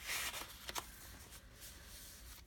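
Paper rustling as the pages and a card of a handmade paper journal are handled and turned, loudest in the first half second, with a couple of light ticks before the first second, then faint.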